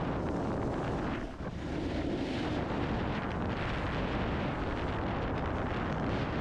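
Wind rushing and buffeting over a body-mounted camera's microphone as a snowboard slides down a snowy run, with a brief lull about a second and a half in.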